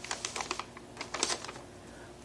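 Small paper slips rustling and crackling as they are handled: two short bursts of quick crackles, one at the start and another about a second in.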